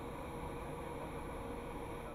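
Faint, steady background noise with a low hum, with no distinct event.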